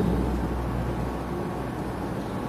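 Room tone with a steady low hum.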